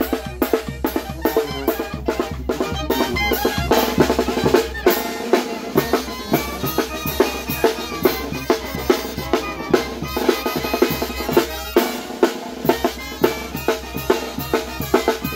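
Oaxacan street brass band playing a festive march, snare and bass drum keeping a steady quick beat under tuba and brass horns.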